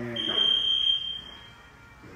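Gym interval timer sounding one long high-pitched beep to signal the start of a work interval; it fades out after about a second and a half.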